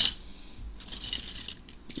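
Plastic LEGO minifigures clattering against each other as a hand rummages through a pile of them on a table: a louder clatter at the start, then lighter, scattered rattling.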